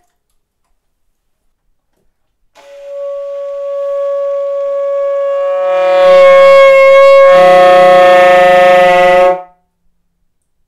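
After about two and a half seconds of silence, an alto saxophone plays one long, foghorn-like held note that swells louder. About six seconds in, a low rough growling layer joins it beneath the note. The note cuts off abruptly shortly before the end.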